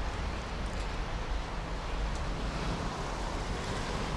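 Wind blowing across the microphone outdoors: a steady low rumble with an even rush of hiss above it and no distinct events.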